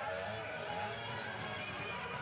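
Faint background of a distant voice and music, steady in level, with no nearby voice over it.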